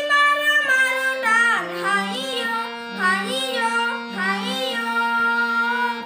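A young singer singing a melody with ornamented, bending held notes over steady sustained instrumental accompaniment, in an Indian classical style.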